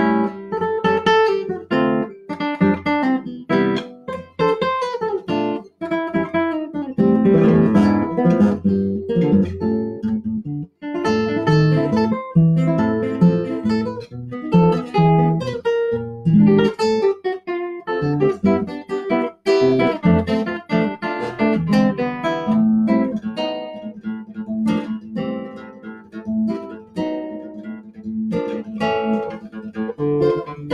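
Solo classical guitar played fingerstyle: quick runs of plucked notes mixed with fuller chords, each note starting sharply.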